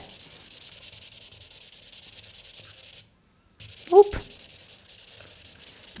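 Felt-tip marker scribbling on paper in quick back-and-forth strokes, a steady scratchy hiss that drops out briefly about halfway.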